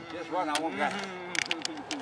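Quiet voices of a small group of people, with a few light, sharp clicks a little past halfway through.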